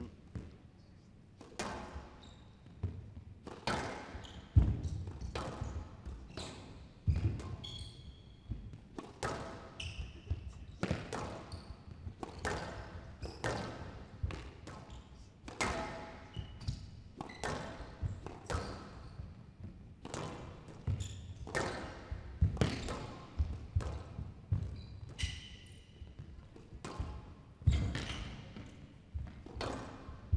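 A squash rally on a glass court: a ball struck by rackets and hitting the walls, sharp knocks about once a second at an uneven pace, with a few short squeaks of court shoes.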